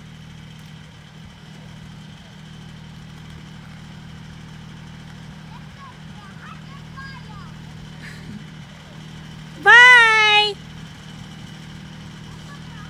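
Zero-turn riding mower engine running steadily at low speed. About ten seconds in, a child's voice calls out loudly for under a second.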